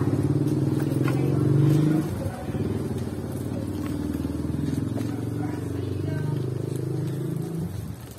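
Small motorcycle engine of a tricycle (motorcycle with sidecar) running as it pulls away and rides along the street. The engine note is loudest for about the first two seconds, then steadies at a lower level and fades out near the end.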